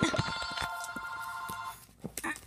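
A sharp knock followed by a bell-like metallic ring: several steady tones that hold for nearly two seconds and then fade out.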